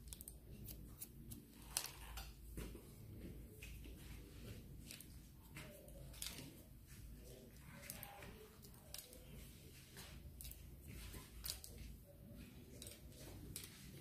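Faint, irregular snips of hairdressing scissors cutting through a held section of hair, with the light handling of a comb.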